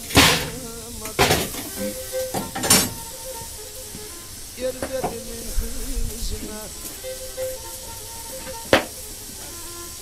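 Metal poker knocking and scraping against a wood stove as the fire is stirred, with a few sharp clanks in the first three seconds and one more near the end. Faint music plays underneath.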